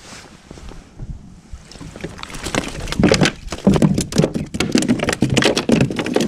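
A small flathead flapping on a plastic kayak deck: rapid, irregular slaps and knocks that begin about two seconds in and grow busier.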